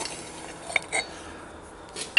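A bronze slide-valve blank handled against the inside of a welded steel steam chest, giving two light metallic clinks close together near the middle.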